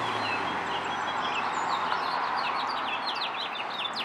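Small songbirds chirping in quick runs of short, high, falling chirps that grow busier about halfway through, over a steady rushing background noise.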